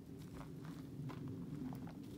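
A hiker's footsteps on a dirt and leaf-litter forest trail, several steps in quick succession, over a steady low rumble from wind or handling on the handheld microphone.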